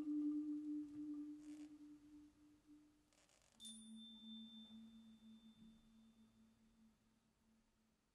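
Mallet-percussion notes on marimba and vibraphone ringing out and fading: a low held note dies away over about three seconds, then a new low note and a high ringing tone are struck together about three and a half seconds in and fade slowly.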